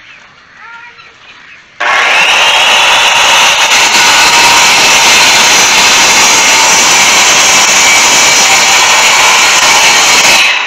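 Corded circular saw starting up about two seconds in, its motor whine rising to full speed, then cutting steadily along a wooden board. Very loud.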